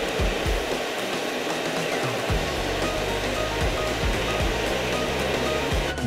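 Twin-head floor grinder running, its two tooling plates spinning against the floor in a steady, even whir. This is the surface-prep grind before an epoxy coating goes down.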